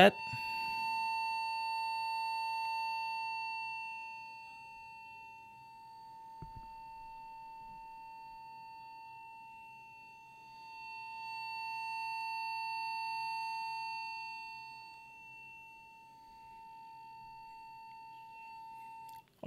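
A steady high-pitched test tone played from a smartphone speaker, swelling and fading as the phone is moved around a cardioid dynamic microphone: loud in front, quieter toward the sides and back. It is loud for the first few seconds, drops about four seconds in, swells again around eleven seconds and fades again near the end.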